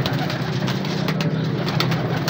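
Several domestic pigeons cooing in a steady low drone, with a few faint quick clicks from wings flapping.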